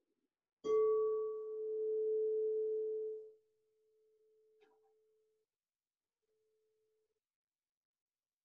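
A meditation bell struck once: a sudden ring with one strong mid-pitched tone and several fainter overtones, which dies away over about three seconds and then lingers faintly.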